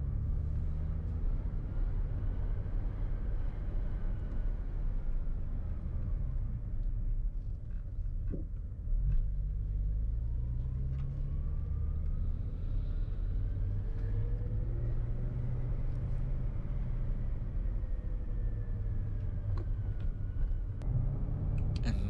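The S85 V10 engine of a 2006 BMW M5 running at low revs, around 2000 rpm, while the car is driven gently in third gear, heard from inside the cabin as a steady low rumble. The pitch drifts slowly up and down a little.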